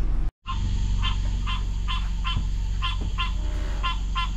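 Frogs calling at night: a short nasal, honk-like call repeated about three times a second, over a steady low hum. The sound drops out briefly about a third of a second in.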